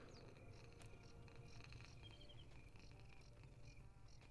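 Near silence: a faint steady hiss, with a few very faint high chirps about halfway through.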